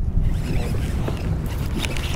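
Steady low rumble of water and wind around a kayak on open bay water, with a few faint ticks.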